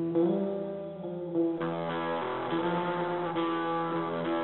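Sinister-sounding instrumental metal piece led by guitar, holding long sustained notes. About a second and a half in, a fuller, brighter layer joins and the sound thickens.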